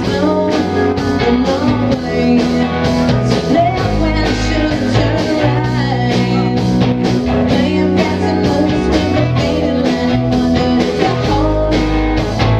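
Live rock band playing with electric guitars, electric bass and drums, driven by a steady drumbeat.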